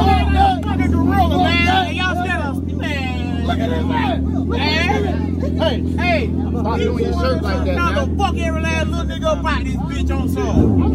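Several men talking and arguing loudly over the steady low rumble of a sport bike's engine idling.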